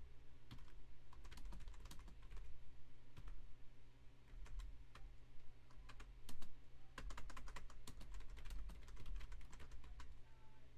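Typing on a computer keyboard: irregular runs of key clicks, sparser about halfway through and coming thick and fast in the last few seconds.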